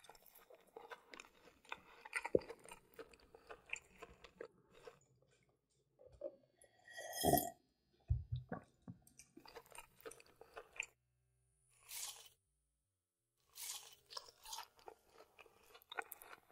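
Close-up chewing and crunching of McDonald's fast food, chicken nuggets and fries. Steady crunching for the first few seconds, then separate bursts of chewing with short silent gaps, and one louder sound about seven seconds in.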